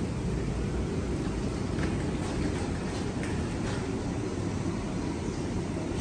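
Steady low rumble of a wood-fired 2x6 Smoky Lake Corsair maple sap evaporator at work boiling down sap, with a few faint ticks.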